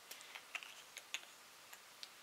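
Several faint, irregular little clicks and taps from handling a plastic foundation tube and a makeup brush.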